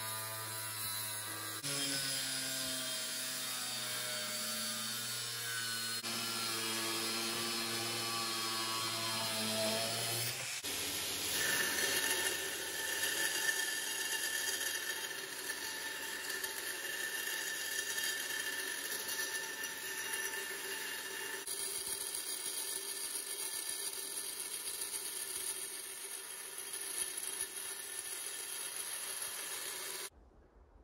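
Makita GA5030R 125 mm angle grinder cutting steel plate, its pitch wavering as the load changes. About ten seconds in it gives way to a belt grinder running steadily, with a steel dagger blank held against the belt.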